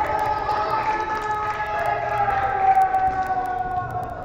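Several high voices yelling together in one long drawn-out cry that slowly falls in pitch.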